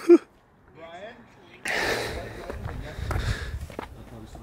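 A man calls out a name with a laugh, then a little before halfway a rumbling hiss of wind and handling noise on the camera's microphone sets in suddenly, with a few footsteps on a snowy trail.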